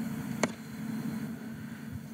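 A single sharp click about half a second in, over a low steady background hum.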